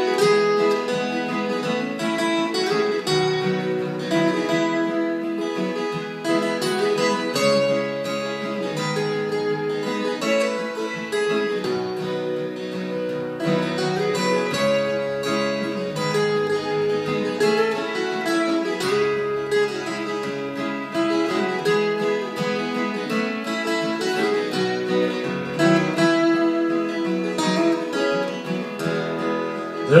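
Two acoustic guitars playing an instrumental break in a folk song, strummed chords with the notes changing steadily and no singing.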